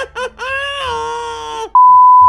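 A loud, steady, single-pitched test-tone beep of the kind played over TV colour bars cuts in sharply near the end, right after a drawn-out spoken word.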